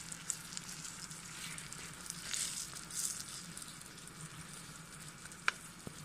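Burger patties and baked beans sizzling in a frying pan on a gas canister stove, a steady crackly frying hiss over a low hum. Two sharp clicks come near the end.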